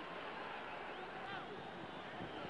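Steady stadium crowd noise heard through an old match broadcast recording, with a brief shout from the crowd about a second in.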